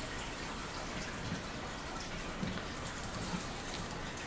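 Steady background hiss, even and unchanging, with no distinct sounds in it.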